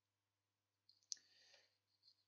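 Near silence, then about a second in a single sharp click with a short soft hiss.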